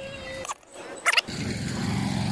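An engine running with an even, rapid pulse, growing louder from about a second and a half in. A short steady tone sounds in the first half second.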